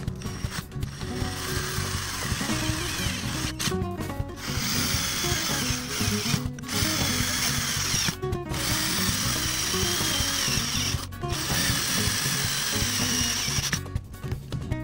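Cordless drill boring holes through a thin copper pipe held in a bench vise, running in about five bursts of a few seconds each with brief stops between them.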